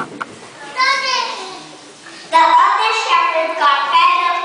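A young child speaking into a microphone, heard through the hall's speakers, starting a little past halfway after a quieter stretch with a couple of soft clicks and a short voice.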